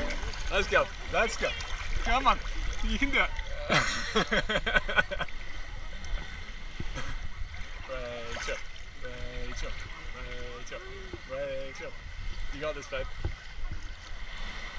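Voices of beachgoers calling and talking in the background, with high shouts in the first few seconds and lower voices later, over sea water lapping and splashing around a waterproof camera held at the water's surface.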